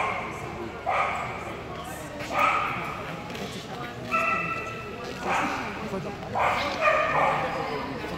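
A dog barking in short repeated yips, about one a second, echoing in a large hall. About halfway through comes a short, steady, high-pitched tone lasting under a second.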